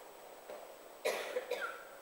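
A single short cough about a second into a quiet pause, lasting under a second, with faint room tone before it.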